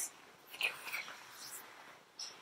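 A child's faint whispered, breathy vocal sounds in a few short puffs.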